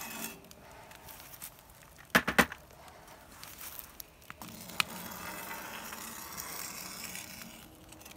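Metal ladle scraping and knocking against a cast iron skillet of molten lead as dross is skimmed off the melt, with a few sharp clinks about two seconds in and another single clink near the middle. A steady hiss runs through the second half.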